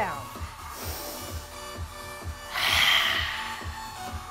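A woman's audible exhale through a narrowed throat (ujjayi breath), a breathy rush lasting about a second that begins about two and a half seconds in and is the loudest sound. Under it runs background music with a steady beat of about two pulses a second.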